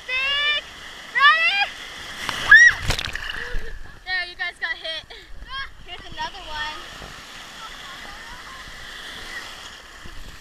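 Ocean wave breaking over a GoPro in the shallow surf: a loud splash about three seconds in, then a steady rush of water washing over the camera. High-pitched voices yell with rising calls over the first half.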